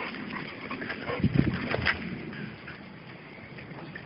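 Dogs play-fighting, with a short, loud dog vocalization about a second in among scuffling sounds.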